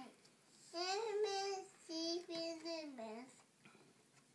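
A toddler singing a short tune in two phrases of held notes, the last note falling away.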